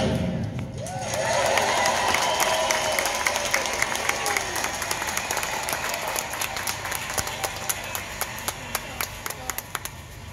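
Audience applauding with some cheering voices after the dance music stops, the clapping thinning to scattered claps near the end.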